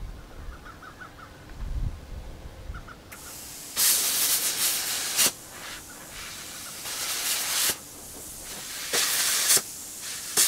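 Metal-cutting torch hissing as scrap iron is cut. A steady hiss starts about three seconds in, with louder hissing spells of about a second each, three times, as the cutting jet is triggered.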